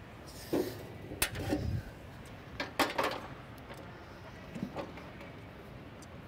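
A few faint, sharp knocks over low indoor room noise: one about a second in and a quick cluster around three seconds in, like tennis balls bouncing on a hard court.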